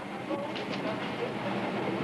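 Steady rumbling and clattering, with a few short knocks about half a second in, as a heavy cabin module is pushed into place inside the aircraft fuselage.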